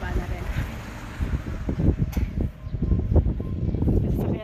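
Wind buffeting a phone's microphone outdoors: an uneven, gusty low rumble with louder surges, loudest around the second and third seconds.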